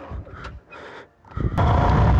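Yamaha FZ25 motorcycle on the move: a steady, loud rumble of riding noise starts suddenly about a second and a half in, after a short stretch of low, faint sound.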